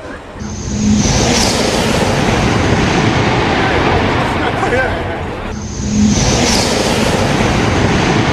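A maglev train passes at high speed: a sudden, loud rushing noise that begins with a sharp high hiss and holds for several seconds. It happens twice, the second onset about five seconds after the first.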